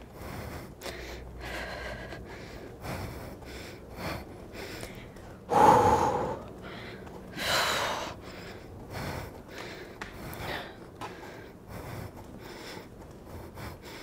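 A woman breathing hard in repeated quick gasps and exhales from exertion at the end of a high-intensity pedaling interval, with two louder, voiced breaths near the middle.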